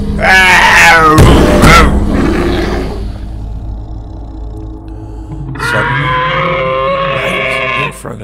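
A man's voice growling and roaring in imitation of a fire-breathing monster for about three seconds. Then comes a quieter low hum, and a long, steady held note in the last two seconds.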